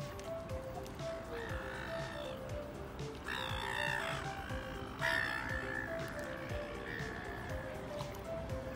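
Background music of short, gently repeating notes, over which black swans give four separate calls, the loudest about five seconds in.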